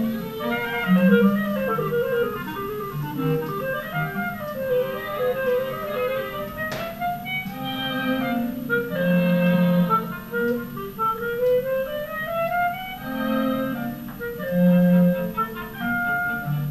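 Clarinet playing a flowing melody in rising and falling runs over low bowed notes from a cello, in a small clarinet-and-strings ensemble. There is a single brief click about seven seconds in.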